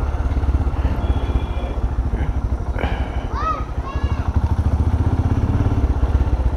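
Motorcycle engine running steadily at low revs, with faint voices of people nearby in the middle.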